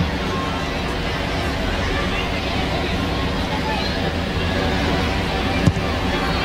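Stadium crowd ambience heard through a TV broadcast: a steady murmur of spectators with faint distant voices. One sharp thump comes near the end.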